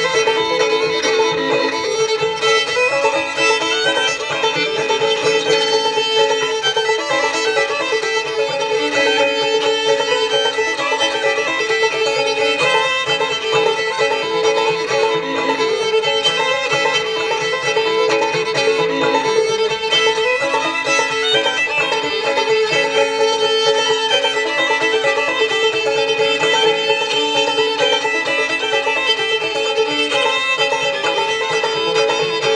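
Fiddle and open-back banjo playing an old-time tune together without a break.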